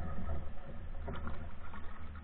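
Canoe paddle strokes in calm water, one stroke clearer about a second in, over a steady low rumble.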